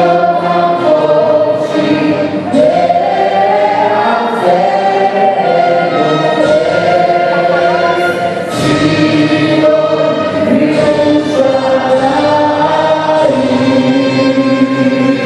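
Israeli army vocal ensemble, male and female voices together, singing a national anthem through microphones in long held notes.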